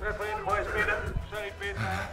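Music playing, mixed with voices.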